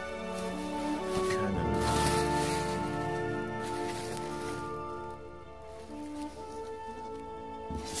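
Background music with steady held notes, and a brief rustle of plastic packaging about two seconds in.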